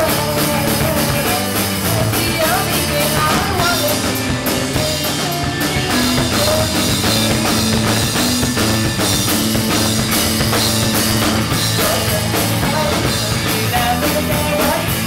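Live rock band playing loudly and without a break: drum kit, electric guitar and a singer's voice through the PA, all in a small bar room.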